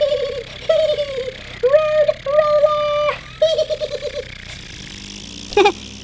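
High-pitched laughter from a puppet character's voice, in several bursts with a drawn-out note, ending in a quick run of short 'ha's about three and a half seconds in.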